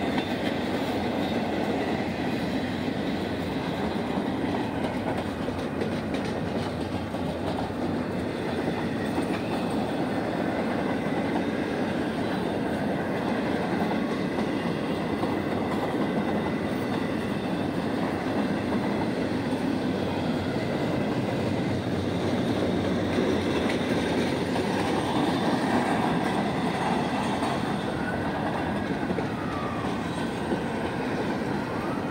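Double-stack container cars of a CSX intermodal freight train rolling past close by: a steady rumble of steel wheels on the rails that does not let up.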